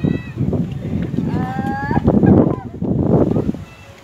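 Shouting voices on a football pitch, with one drawn-out high call about a second and a half in.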